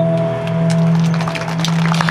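Acoustic guitar's final chord ringing out and fading at the end of a song. Scattered hand claps start about half a second in and thicken toward the end.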